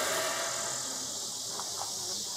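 Steady high-pitched hiss of outdoor background noise, with nothing else standing out.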